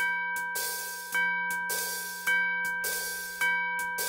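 Cartoon clock chime striking the hour: four bell strikes about a second apart, each ringing and fading before the next, over a faint low hum.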